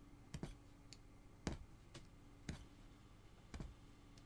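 Punch needle stabbing through cloth stretched taut in an embroidery hoop: about six faint clicks at an uneven pace, the loudest about a second and a half in, over a low steady hum.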